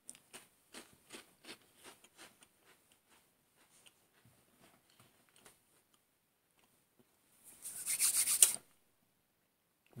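A person chewing a Ritz cracker: a run of faint crunches, about three a second, fading away over the first five seconds. A louder rasping rustle lasts about a second near the end.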